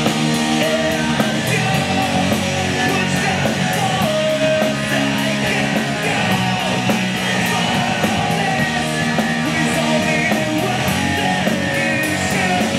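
Live amplified rock band playing: distorted electric guitars, bass guitar and a drum kit, with a steady cymbal beat driving the song.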